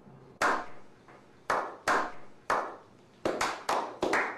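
Slow hand clapping that speeds up: single claps about a second apart at first, quickening near the end as more people join in.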